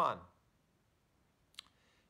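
A man's voice ends a word, then a quiet pause broken by one short, sharp click about one and a half seconds in.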